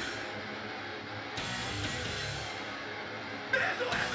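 Live hardcore band: a quieter stretch carried mainly by electric guitar, then the full band and shouted vocals come back in suddenly about three and a half seconds in.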